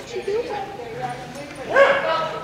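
A small dog yipping and whining excitedly as it runs an agility course, mixed with the handler's calls, with a louder rising call near the end.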